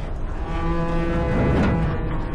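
Film sound mix of a truck engine, with a held low pitched tone over it from about half a second in, lasting about a second.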